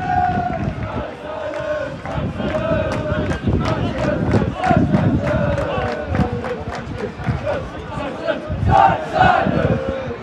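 Football crowd chanting on the terrace, many voices holding a sung chant over the general crowd noise at a match that has just kicked off.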